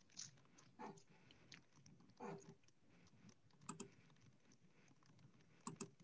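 Near silence over a video-call line, with a few faint short clicks and small noises scattered through it.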